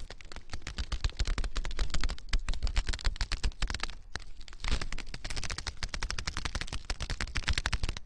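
A rapid, irregular clatter of clicks and cracks, many each second, easing briefly about four seconds in.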